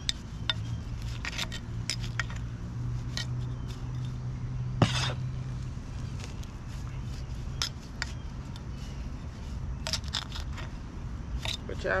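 Hand trowel scraping and clinking against the concrete of a cinder-block planting hole as soil and pine-straw roots are dug out, in scattered sharp scrapes and clicks, one louder than the rest about five seconds in. A low steady hum sits under the first half.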